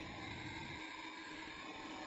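Faint, steady hiss with a low hum, with no distinct events.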